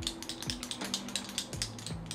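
A quick, irregular run of small plastic clicks from a contour makeup product being handled and worked.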